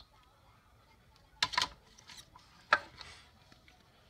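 Rigid plastic card holders being handled and swapped in a wooden box: a quick pair of light clacks about a second and a half in, then a single sharper click near three seconds, with low room tone between.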